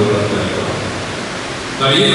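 A man making a speech over a microphone and loudspeakers, breaking off just after the start and resuming near the end; in the pause a steady hiss fills the room.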